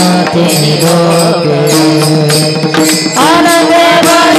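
Women's group singing a Marathi devotional bhajan in chorus, with small brass hand cymbals (tal) struck in a steady beat. The voices hold one long note, then start a new phrase about three seconds in.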